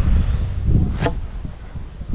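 Boilie throwing stick swung to cast a 20 mm boilie: one quick whoosh about a second in, over wind buffeting the microphone.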